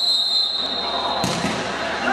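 Referee's whistle blown in one long blast that cuts off a little over a second in, followed at once by a sharp knock of the futsal ball being struck. Spectator voices murmur underneath.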